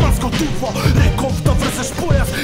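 Male rap verse in Macedonian over an old-school boom-bap hip hop beat with heavy kick drums.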